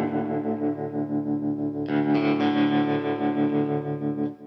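Electric guitar through a RevivalTREM bias tremolo pedal, its tremolo shape set back to the top, amp-like setting. A ringing chord pulses quickly in level, and a second chord is strummed about two seconds in and rings on.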